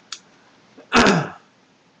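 A man clears his throat once, a short sharp burst about a second in that falls away in pitch.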